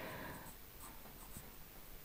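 Faint scratching of a Derwent graphite pencil on drawing paper, a few short strokes.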